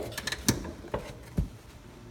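Four short plastic clicks and knocks, about half a second apart, the last one a duller thud, as a Polaris RZR's seat is unlatched and lifted out.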